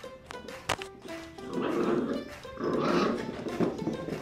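Two rough growls, each under a second, from a miniature pinscher and a cat play-fighting, with a sharp click shortly before them. Plucked-string background music with a banjo-like sound plays throughout.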